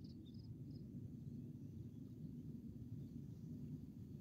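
Faint, steady low background hum with a few faint, high, short chirps from an insect in the first second.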